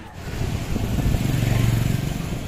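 A vehicle engine running close by, its low hum growing louder over the first second and a half, with road and wind noise above it.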